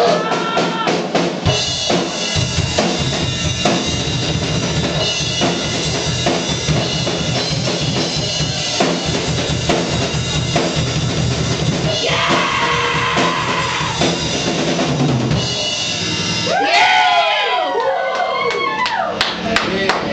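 Rock drum kit played live as a drum feature: kick drum, snare and rimshot hits, with a wash of cymbals about twelve seconds in and some gliding high sounds near the end.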